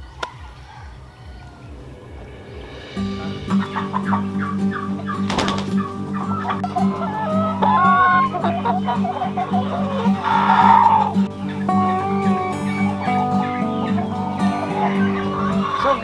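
A flock of chickens clucking and calling over background music that comes in about three seconds in, with a louder call about ten seconds in.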